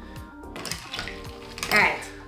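Background music, with a metal straw being lowered into a tall glass of ice and fizzy ginger beer, giving a faint swishing clink about halfway through; a short voice sound near the end.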